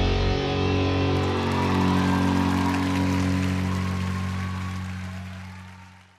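A live band's closing chord, with guitar, held and ringing out, fading away over the last couple of seconds.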